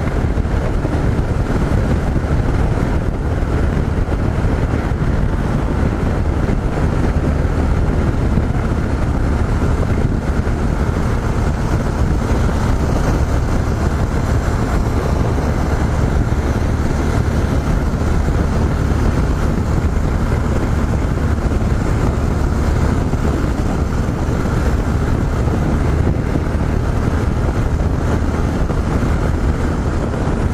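Yamaha XT 660Z Ténéré's single-cylinder four-stroke engine running steadily at highway cruising speed, mixed with wind rushing over the microphone.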